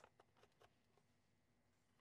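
Near silence, with a few faint clicks in the first second from the pink plastic drill tray and its pour spout being handled.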